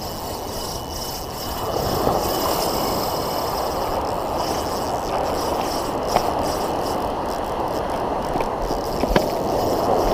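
Ocean surf washing in and out around the water's edge, swelling in waves, with a few light clicks.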